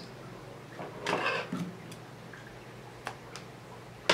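Quiet handling sounds: a brief rustle about a second in, then a sharp click near three seconds in, the snip of small scissors cutting off the excess polyamide beading thread.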